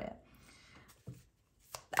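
Two light taps of a tarot card deck being handled against a tabletop, one about a second in and one near the end.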